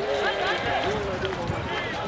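Speech: a voice talking over the football footage, in the manner of match commentary, with a steady background haze.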